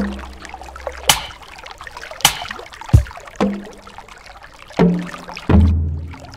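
Ambient electronic music: sparse, irregular sharp clicks and short pitched tones over a deep bass drone that fades away in the first second, with a new deep bass swell near the end.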